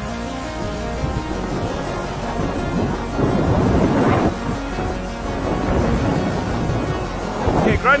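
Wind buffeting the camera microphone and water rushing and splashing past the bow of a yacht sailing fast, swelling loudest about three to four seconds in.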